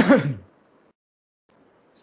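A man's single short cough at the start, sharp at the onset with a brief falling voiced tail.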